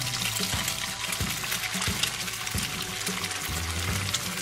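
Background music with a steady hissing sizzle laid over it, a frying sound effect for an egg cooking in a pan.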